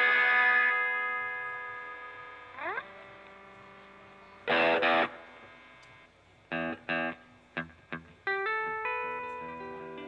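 Electric guitar through effects pedals, played loosely between songs: a ringing chord that dies away over a couple of seconds, a quick slide up, a short loud chord stab about halfway, then a few clipped notes and a run of single notes near the end.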